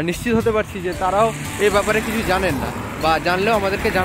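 A man talking, with the noise of a passing road vehicle, most likely a car, swelling under his voice in the second half.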